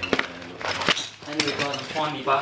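Plastic-sleeved pages of a ring binder being turned and the binder handled, with a few sharp clicks and rustles. A voice talks in the second half.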